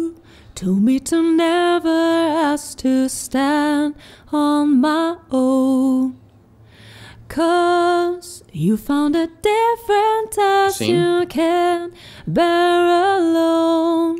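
Female lead vocal heard on its own, singing a slow melody in sustained phrases with a short break about six seconds in. It runs through Logic Pro's Compressor (Platinum Digital, 2:1 ratio) with light compression of about 4 dB, a limiter and a touch of distortion.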